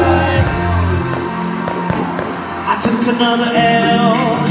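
Live pop band performance through a PA system, with sung vocals over the band. The deep bass drops out about a second in.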